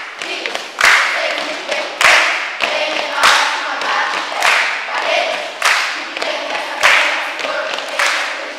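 A group of children singing or chanting together, with a loud clap in unison about every second and a quarter that keeps the beat.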